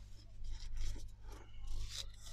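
Thin tissue paper being torn and peeled away by hand in soft, irregular rips: the excess napkin and backing pulled off the edges of a napkin-decoupaged paper tag. A steady low electrical hum runs underneath.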